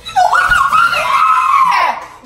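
A girl's long, loud, high-pitched shriek lasting a little under two seconds, holding its pitch and then sliding down as it breaks off, her reaction to tasting the candy.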